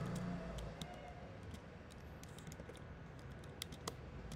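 Scattered keystrokes and clicks on a computer keyboard and mouse: a few single clicks spaced about a second apart, then a quick cluster of three near the end.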